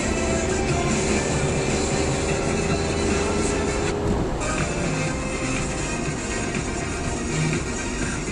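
Music playing on a car radio inside the cabin of a moving car, with steady road and engine noise underneath.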